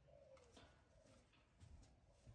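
Near silence, with one faint short call at the start that slides slightly down in pitch.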